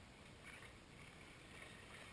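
Near silence: faint outdoor ambience with a few faint, short peeps from mallard ducklings.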